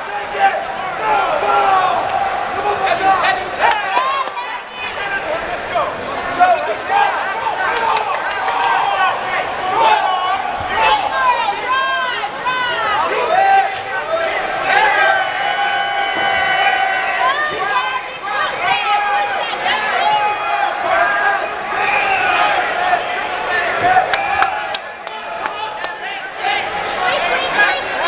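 Many spectators and coaches talking and shouting over one another throughout, with a few louder held calls in the middle and a few sharp smacks.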